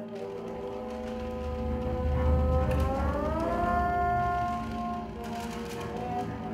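Chamber ensemble playing a contemporary film score: a held note slides upward about three seconds in and holds at the higher pitch, over a deep rumble that swells and then eases.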